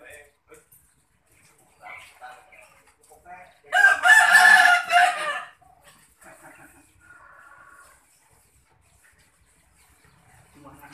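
A rooster crowing once, a loud call of nearly two seconds starting about four seconds in.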